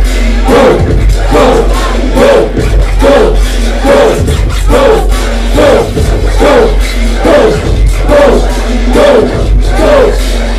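Live hip-hop played loud over a club PA: a steady deep bass line under a short vocal figure that repeats about one and a half times a second, with crowd voices mixed in.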